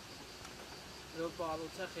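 A faint, steady, high-pitched insect drone, with a person speaking a few words over it in the second half.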